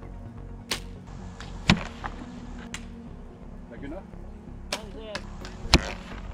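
Compound bows being shot: about five sharp snaps of bowstrings released and arrows striking a foam block target, the loudest near the end.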